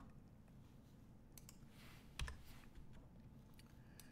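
Near silence with a few faint, short clicks from a computer, the loudest about two seconds in, as the presentation slide is changed.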